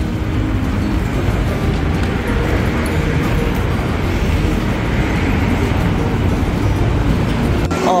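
Busy city street ambience: a steady wash of road traffic with passers-by.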